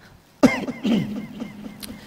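A man coughing and clearing his throat close to a microphone: a sudden first cough about half a second in, a second one just before the one-second mark, then fading.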